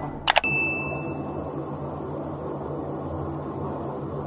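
Two quick clicks followed by a short, steady electronic beep, over the continuous low hum of running machinery.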